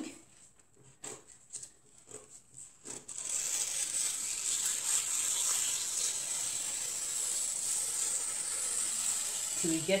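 Scissors cutting through a paper sleeve pattern along a slash line: a few faint clicks and paper rustles, then from about three seconds in a steady high hiss as the blades glide through the paper.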